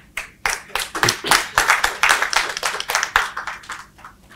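A small audience applauding: dense hand-clapping that builds up about half a second in and thins out near the end.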